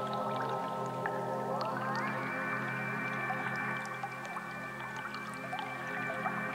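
Live synthesizer music in the Berlin School style: a sustained chord over a low drone, the upper tones gliding smoothly upward about a second and a half in and then holding, with short high blips scattered over the top.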